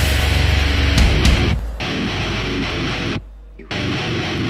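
Loud death metal music. It thins briefly about a second and a half in, and near the end drops out for about half a second, leaving only a low bass note, before starting again.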